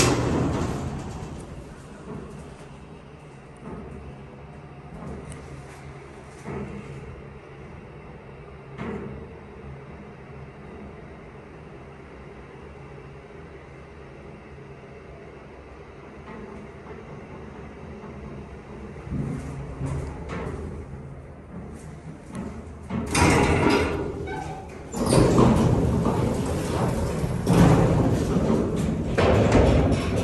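Montgomery hydraulic freight elevator: a button press, then the car travelling with a steady hum. From about 23 seconds in, its metal mesh gate and doors are pulled open with loud rattling and clattering.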